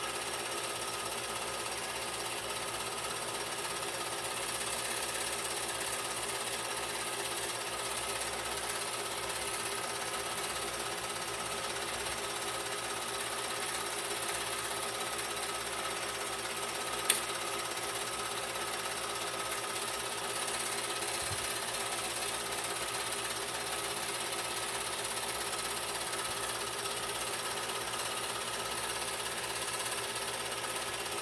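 Home-movie film projector running with a steady, even mechanical clatter as the film feeds through, with one sharp click a little past halfway.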